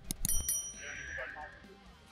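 Two sharp clicks just after the start, followed by a short, bright metallic ring that fades within about a second, over background music.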